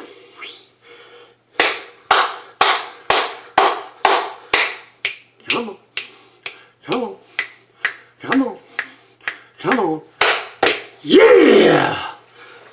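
A quick run of sharp hand slaps, about two or three a second and uneven, some with a voiced grunt mixed in. Near the end comes a loud, drawn-out yell that falls in pitch.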